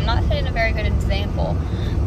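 Steady low rumble of road and engine noise inside a moving car's cabin, under a woman's talking.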